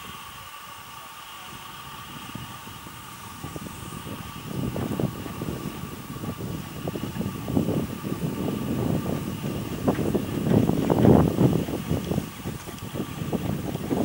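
Small narrow-gauge steam locomotive working slowly, with an irregular low chuffing rumble that builds from about a third of the way in and is loudest near the end. A faint steady high hum runs underneath.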